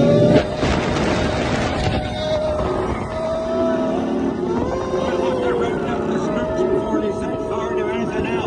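Roller coaster ride in motion: orchestral music with long held notes plays from the motorbike ride vehicle's onboard speakers over the steady rumble and rush of the train running along the track. A brief louder rush comes just after the start.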